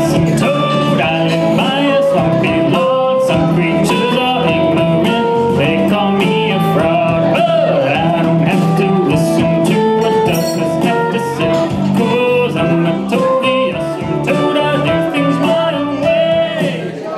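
Electric guitar picking a single-string melody, one note at a time, over a recorded backing track.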